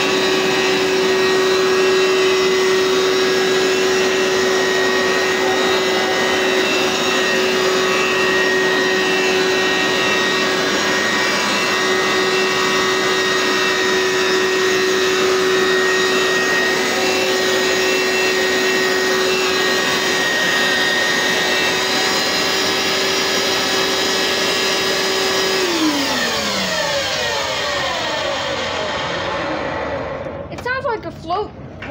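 Hoover SteamVac WidePath carpet cleaner running with a loud, steady motor whine. Near the end the motor is switched off, and its pitch falls steadily as it winds down.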